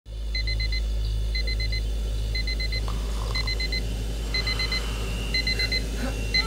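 Digital alarm clock beeping, going off in groups of four quick high beeps, about one group a second, over a steady low hum.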